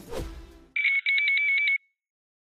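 Music fading out, then the Brazilian electronic voting machine's (urna eletrônica) vote-confirmation sound: a high, rapid electronic warble, a short burst and then a longer one, cut off sharply.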